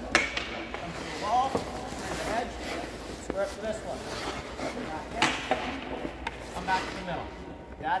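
Goalie's skate blades pushing and stopping on the ice, with a few sharp scrapes: the strongest just after the start, about a second and a half in, and about five seconds in. Voices talk in the background.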